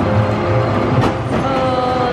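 A spinning roller coaster car rumbling and clattering along its steel track as it passes, with a sharp clack about a second in, over steady background music.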